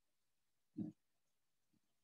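Near silence, broken once about a second in by a short, low grunt-like vocal sound, with a faint tick shortly after.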